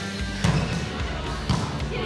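Two thuds of a volleyball being struck, about a second apart, over background music.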